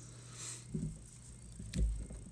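Faint handling sounds of fingers and scissors working at a fly-tying vise, with a soft low bump near the end, over a steady low hum.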